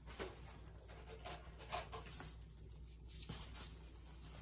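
Faint, scattered small clicks, knocks and rustles of supplies being handled and set down, over a low steady room hum.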